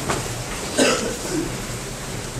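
Background noise of a room, with one short, muffled vocal sound a little under a second in.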